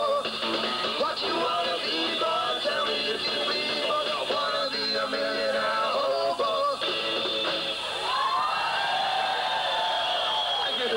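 Live rock'n'roll trio playing: electric guitar, upright double bass and drums, with bending guitar notes near the end.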